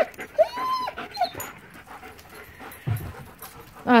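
German Shepherd whining: a short, high, rising-and-falling whine about half a second in and a brief second one just after, followed by a low thump nearly three seconds in.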